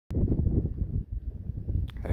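Wind buffeting the camera microphone: an uneven low rumble that rises and falls, with a short click right at the start.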